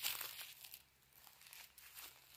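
Footsteps rustling and crunching through dry fallen leaves, a few faint steps that grow quieter after about a second.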